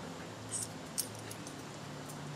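A harnessed dog moving about on concrete: a brief metallic jingle about half a second in, a sharp click at about one second and a few fainter clicks after it, over a steady low hum.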